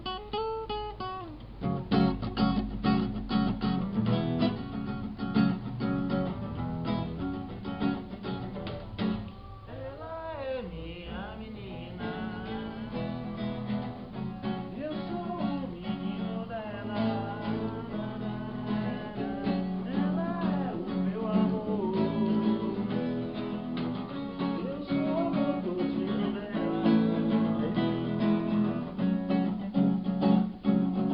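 Acoustic guitar strummed in an MPB (Brazilian popular music) style, with a voice singing along at times.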